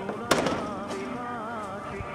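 A single sharp gunshot about a third of a second in, with a couple of smaller cracks just after it, over background music with a wavering melody.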